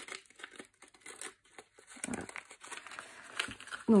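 Small clear plastic packet crinkling as it is opened and handled, with light, irregular clicks of small metal paper clips being taken out onto a wooden board.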